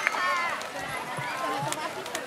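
High-pitched voices chattering briefly, children in a seated audience.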